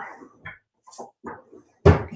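A sheet of white cardstock picked up and handled, with a few faint short rustles, then one sharp thump near the end.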